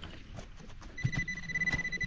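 Handheld metal-detecting pinpointer giving one steady high beep, about a second and a half long, starting about a second in: it has found more metal, another coin, in the loose soil. Before it, faint scratching in the dirt.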